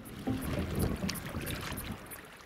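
Small waves lapping and trickling against stones at the water's edge, with some wind on the microphone.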